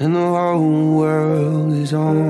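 Acoustic pop cover song: a low singing voice comes in suddenly and holds long, wordless notes that slide gently between pitches, with a brief break just before the end.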